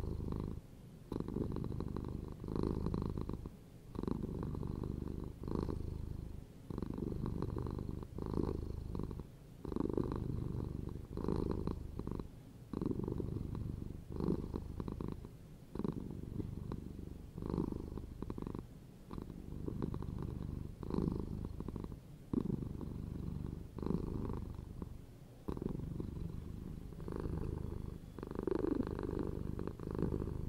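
Domestic cat purring close up, steady and low, in even pulses about a second apart as it breathes in and out.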